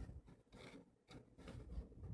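Faint scraping of a spoon stirring thick, coarse millet-and-curd batter in a metal bowl, in a few short strokes.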